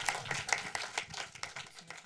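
Audience applauding, the clapping steadily fading out.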